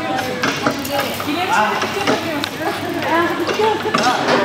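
Onlookers' voices talking and calling out in a busy, echoing indoor hall, with a few faint knocks.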